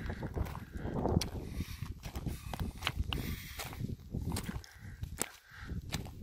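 A hiker's footsteps crunching over loose limestone scree and gravel at a walking pace, with many short sharp clicks of stones knocking together underfoot.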